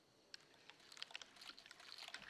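Near silence, broken from about a third of a second in by faint, scattered short clicks, typical of a speaker's mouth and lip noises just before talking.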